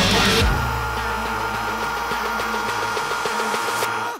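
Heavy metal band track with a down-tuned seven-string electric guitar played through a high-gain amp profile. About half a second in, the full band drops away and a low chord is left ringing.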